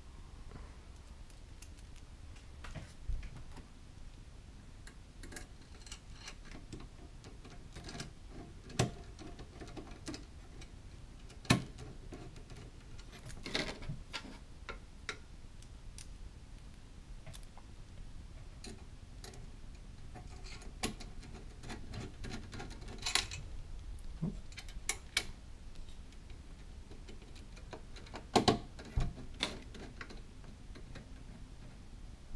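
Irregular small metallic clicks and taps of a screwdriver and mounting screws on a metal CPU tower cooler as its screws are threaded in by hand, with a few sharper knocks now and then.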